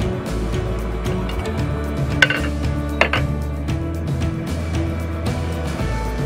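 Background music, with two metallic clinks about two and three seconds in as an aluminium pan lid is lifted off a pan.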